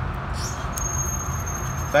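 Steady low outdoor rumble. About a second in, a thin, steady, high-pitched squeal starts up, the noise of a nearby gate.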